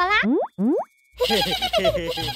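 Cartoon sound effects: a long sliding tone ends, two quick rising boings follow, then a short silence. About a second in, bouncy children's background music starts.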